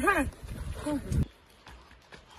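Men's voices calling out with rising and falling pitch, not forming words, for the first second or so. They cut off abruptly, leaving a low background with a few faint taps.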